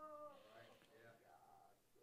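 Near silence: room tone, with a faint, short pitched sound, slightly falling, right at the start.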